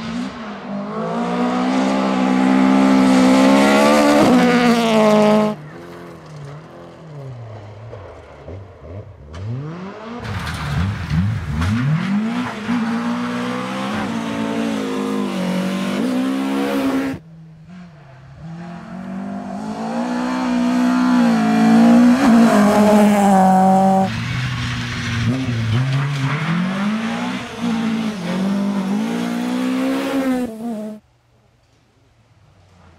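Rally cars driven flat out on a gravel stage, one after another, including a Subaru Impreza and a Volvo saloon: each engine revs hard and climbs in pitch as the car accelerates past, with loose gravel hissing under the tyres. The passes are joined by several abrupt cuts.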